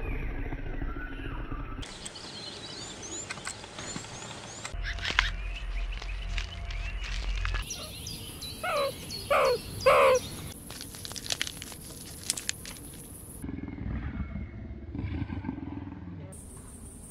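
A run of short wild-animal sound clips cut together. A lioness growls near the start, birds chirp for a few seconds after that, and just past the middle come three loud calls, each falling in pitch.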